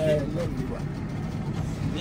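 Boat engine running with a steady low hum.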